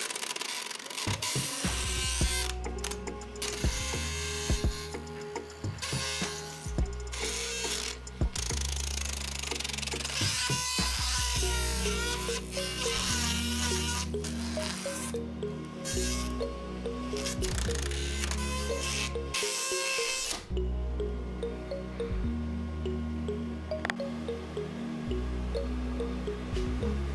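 Background music with steady bass notes, over a rough, drill-like buzzing rattle of a paper strip being slapped by the spinning blades of a small PC fan; the buzzing stops about twenty seconds in and only the music is left.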